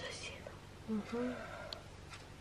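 Quiet whispering, with a short murmured voice sound about a second in.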